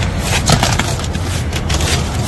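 Black adhesive vinyl window film being peeled off glass and bunched in the hands, crackling and rustling irregularly, over a steady low rumble.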